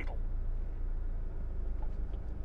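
Steady low rumble of a diesel motorhome's engine and road noise, heard from inside the cab while it is being driven.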